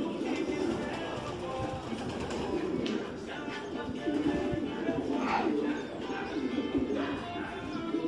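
A flock of racing pigeons cooing in a loft: many overlapping low, wavering coos with no pause between them.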